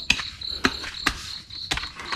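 Crickets chirping in a steady high pulse, with about four sharp chops of a knife into a green coconut spread across the two seconds.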